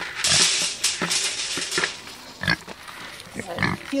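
Dry feed poured from a plastic bucket into a wire crate, a rattling hiss lasting about two seconds, followed by a few short grunts from a boar.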